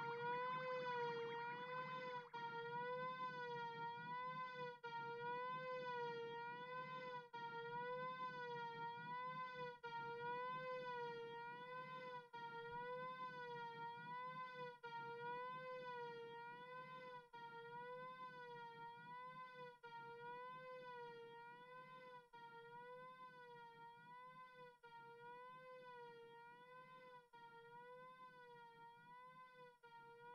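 Live electronic music: a single sustained synthesizer tone with a slow, even vibrato over a low drone, briefly dipping every couple of seconds and slowly fading out.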